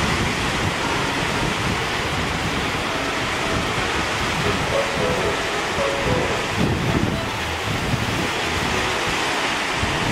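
Rough sea surf breaking and churning over dark lava rocks, a steady rush of whitewater, with wind buffeting the microphone in gusts.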